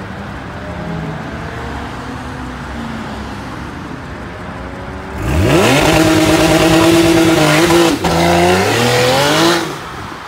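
Porsche 911 flat-six engine running at low throttle, then revved hard from about five seconds in as the car launches. It rises sharply in pitch and holds high, dips briefly, climbs again and cuts off just before the end as the car slews sideways.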